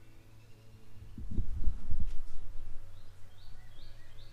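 Several dull low thumps close together about a second in, the sound of the camera and its microphone being handled and moved, over a steady low hum.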